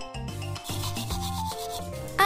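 Toothbrush bristles scrubbing in repeated short strokes, over soft background music.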